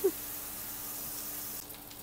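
Sauce-dipped corn tortillas frying in oil on an electric griddle: a steady sizzle that drops off a little near the end.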